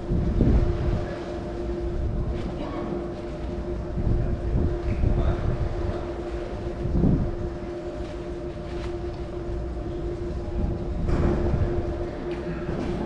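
A steady low rumble with a constant hum running under it, the background noise of a large hall. Faint voices and a few louder swells come and go over it.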